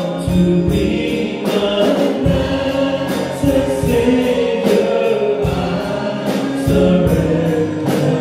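Male vocal trio singing a gospel hymn in harmony into microphones, over an instrumental accompaniment with bass and a steady drum beat.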